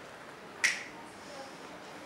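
A single short, sharp click about two-thirds of a second in, against a quiet room.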